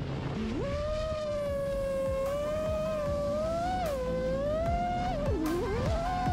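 Motors of an iFlight Titan DC5 6S five-inch FPV quadcopter whining. The pitch climbs sharply about half a second in, then rises and dips with the throttle, with a brief deep dip near the end, over background music.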